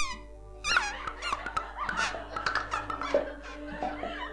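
Comic squeaky sound effects standing for pimples sprouting overnight: a loud wavering squeak about a second in, then a quick flurry of little squeaks and pops, over light backing music.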